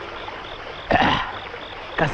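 Rhythmic insect chirping, short high pips about four times a second, in woodland stream ambience. About a second in comes a brief voice sound that rises in pitch.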